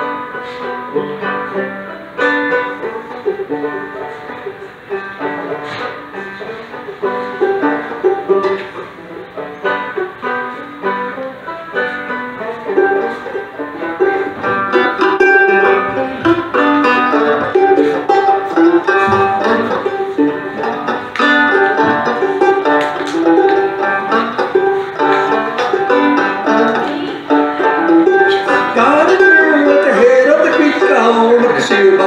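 Clawhammer banjo played through a PA: an old-time tune of quick, bright plucked notes. It gets louder about halfway through.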